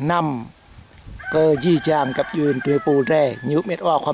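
A rooster crowing behind a man's speech, one drawn-out crow starting about a second in.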